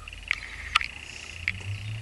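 A few light clicks and taps from hands handling a small wooden business card holder, over a faint, steady high-pitched whine.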